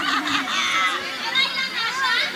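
Several people talking over one another, with high-pitched voices, likely children's, prominent in the chatter.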